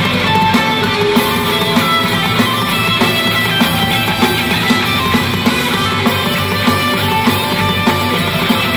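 Rock band playing live: electric guitars, bass and drums in a loud, steady passage with a regular beat.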